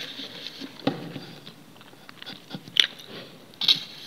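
Close-miked chewing of a mouthful of instant noodles: soft, wet mouth sounds, broken by a few sharp clicks about a second in, near three seconds and near the end.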